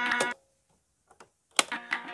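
Small portable radio: its tinny, narrow-sounding voice cuts off shortly after the start. After about a second of silence a sharp click of a button or switch comes, and the radio sound comes back.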